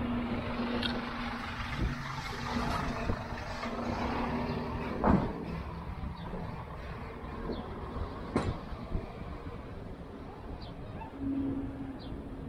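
Steady low hum of a refrigerated box truck's engine and cooling unit that stops about five seconds in, with a sharp knock at that point and a second knock a few seconds later.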